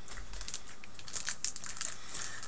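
Plastic chocolate-bar wrapper crinkling in the hands, a run of quick crackles that grows busier in the second second.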